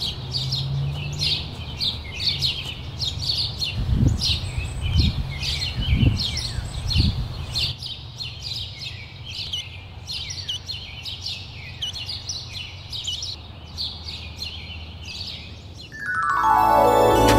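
Small songbirds chirping and twittering rapidly and continuously. Four soft low thumps come about a second apart in the middle.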